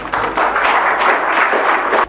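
Audience applauding, a steady, dense spread of hand claps.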